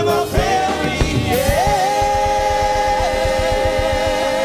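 A gospel worship team of several singers sings in harmony over a band with drums. From about a second and a half in they hold one long chord.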